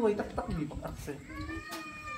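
A man speaking briefly, then a high-pitched, drawn-out, cry-like sound that begins a little over a second in and slowly falls in pitch.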